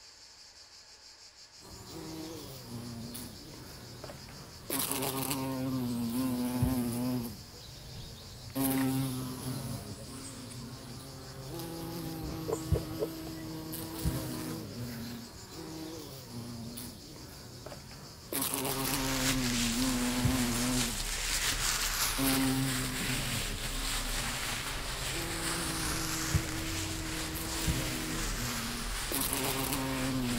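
Binaural recording of a flying insect buzzing around the listener's head, coming and going and growing louder and fainter in stretches. About two-thirds of the way in, a loud steady rushing noise joins it and becomes the loudest sound.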